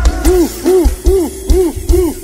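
Pagodão band music with boosted bass: a hooting tone that rises and falls about two and a half times a second over heavy bass-drum thumps.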